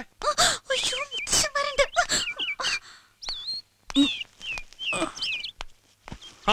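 High-pitched, wavering squeals from a person in the first half, followed by thin, whistle-like chirps that slide up and down in pitch.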